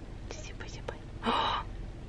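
A person whispering briefly: a short, breathy whisper about a second and a quarter in, after a few faint clicks.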